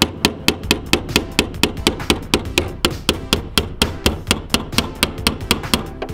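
Rapid hammer taps on a screwdriver set against a car's metal fuel pump lock ring, knocking it round to tighten it down: a steady run of sharp strikes, about five a second.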